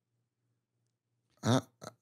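Near silence with a faint low hum, then about a second and a half in a man's voice starts an answer with a short 'I'.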